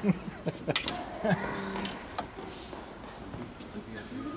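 Faint background voices with a few sharp clicks and knocks, most of them in the first two seconds.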